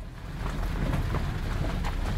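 Car driving along a lane, heard from inside the cabin: a steady low rumble of engine and tyres with some wind, and a few faint knocks.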